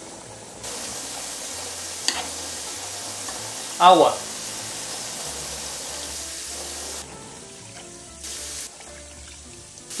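Electric hot pot sizzling steadily with the fish and vegetables cooking in it, with a short clink about two seconds in. The sizzle drops away after about seven seconds.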